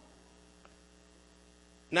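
Steady low electrical hum, faint, with a tiny tick about two-thirds of a second in. A man's voice starts speaking right at the end.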